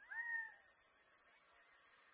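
A single short animal call, about half a second long, that rises briefly and then falls in pitch, heard right at the start over a faint, steady high-pitched background hum.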